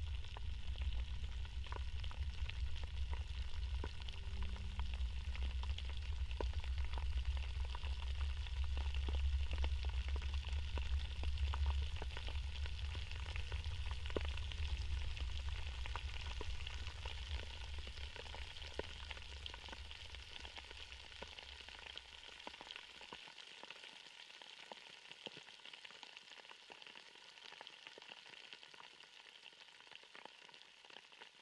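Outdoor ambience with wind rumbling on the microphone and a steady crackling hiss. The low wind rumble cuts off abruptly about three-quarters of the way through, and the remaining crackle fades down toward the end.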